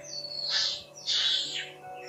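Infant macaque giving a few short, high-pitched cries that fall in pitch, over steady background music.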